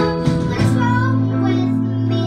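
A young girl singing into a microphone with a live band backing her on keyboard and other instruments. The rhythmic strumming stops about a third of the way in, and the band holds a long chord under her sung note.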